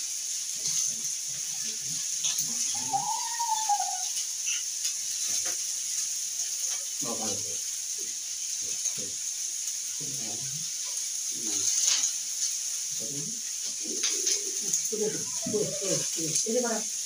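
Short, scattered fragments of a person's voice, low murmurs and grunts rather than clear words, over a steady hiss, with one brief rising-then-falling note about three seconds in.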